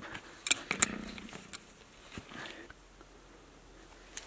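A few light clicks and taps from an adjustable wrench being handled at a well cap, three or four of them in the first second and a half.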